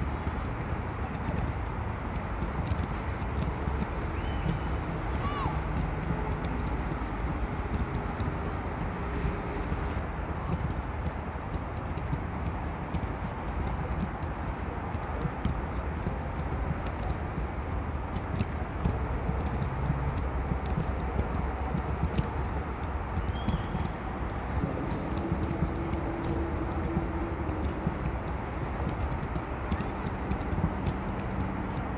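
Outdoor ambience of a soccer match: a steady low background rumble, with faint distant shouts from players and scattered sharp clicks.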